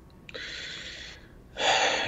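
A person breathing in audibly close to the microphone: a soft breath, then a louder one about a second and a half in, just before speaking.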